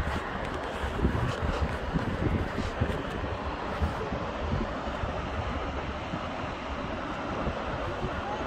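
Wind buffeting the microphone in gusty low rumbles over a steady rushing of whitewater from the creek in the canyon far below, with a few faint handling clicks in the first few seconds.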